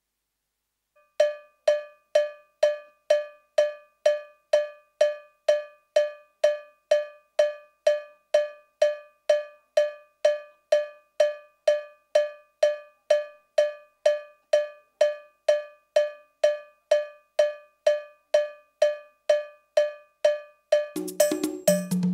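A steady cowbell-toned click, identical strokes a little over two a second (about 130 beats a minute), keeping time like a metronome. It starts about a second in, and near the end the band comes in with drums and bass.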